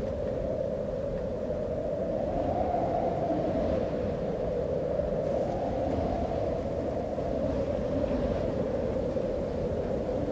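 Sustained dark ambient drone: a steady rumbling hum with a held mid-pitched tone that swells and wavers slightly, as in a horror film score.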